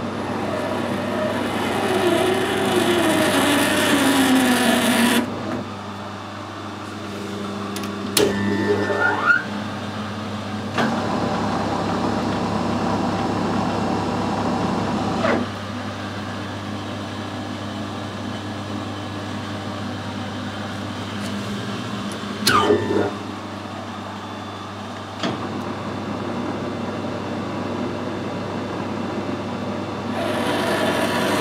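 Metal lathe cutting a BSP thread on a brass fitting: a steady motor hum under a noisy cut with a falling tone, which stops sharply about five seconds in. Later come several clunks as the spindle is stopped and started again.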